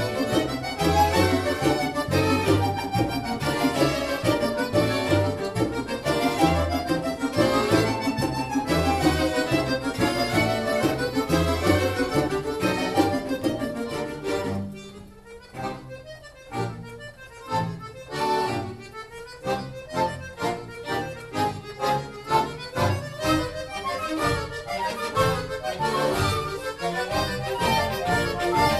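An accordion orchestra with violins, cello and rhythm section playing live, with a steady bass pulse. About halfway through it drops to a quiet, sparse passage of short separated notes, then a regular beat returns and the full ensemble builds back up.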